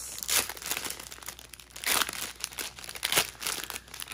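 Small clear plastic zip-lock bags of diamond-painting drills crinkling as they are handled, in irregular rustles with a few sharper crackles, the loudest about two seconds in.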